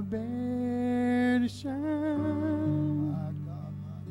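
Slow song: a solo voice holds two long notes with vibrato over sustained low accompaniment, which carries on alone near the end.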